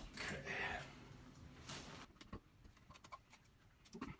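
A few faint clicks and a short scrape from an old-work electrical box being tightened into a drywall hole, its clamping tabs turned to grip behind the wall.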